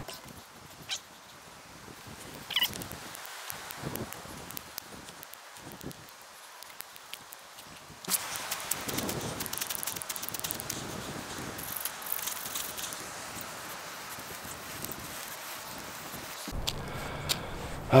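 Fire-lighting on snowy ground: quiet handling of sticks and fatwood tinder with a few light clicks, then from about halfway a steady rushing hiss full of sharp little crackles as a knife works at the tinder and it begins to smoke.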